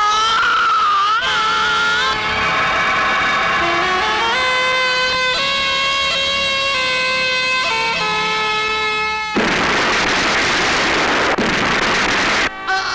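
Dramatic film score of sustained, stepping tones, cut off about nine seconds in by a sudden loud rushing blast: a car exploding into a fireball.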